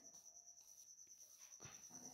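Near silence: room tone with a faint steady high-pitched whine and one faint tick about one and a half seconds in.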